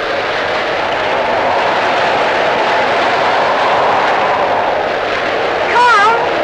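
Steady rushing wash of rough sea and wind. A brief voice is heard near the end.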